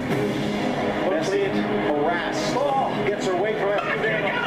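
Football match broadcast sound: a commentator talking over steady stadium crowd noise.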